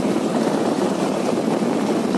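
A vehicle engine running steadily while travelling along a gravel road, with road noise.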